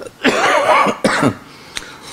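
A man coughing: a longer rough cough followed by a shorter one, then a small click.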